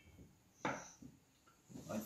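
A single short knock about a third of the way in, fading quickly, in an otherwise quiet moment.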